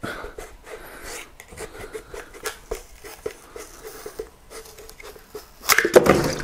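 Plastic scraper prying and scraping a cured resin print off a metal printer build plate: a run of small scrapes and clicks, with a louder click near the end.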